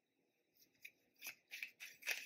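A deck of tarot cards being shuffled by hand. Short papery flicks start about half a second in and come faster toward the end.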